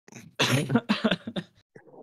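A person coughing: one loud cough about half a second in, trailing off into a few shorter, fainter ones.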